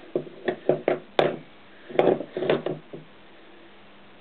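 Two sharp metal knocks, under a second apart, with softer clinks around them, as the flywheel and its starter gear are handled over the crankshaft of a Honda CX500 engine.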